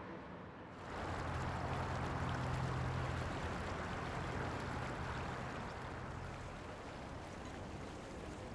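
Riverside night ambience: a steady wash of water-like noise with a low, steady hum beneath it. It comes in suddenly about a second in, and the hum fades out about six seconds in.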